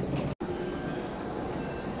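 Steady hubbub of a busy airport terminal hall: a constant hum with indistinct voices in the background, broken by a sudden instant of silence about a third of a second in.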